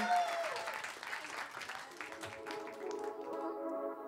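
Audience applauding, dying away over the first few seconds, as music with steady sustained tones fades in about halfway through. The tail of a man's long shouted "yeah" ends just at the start.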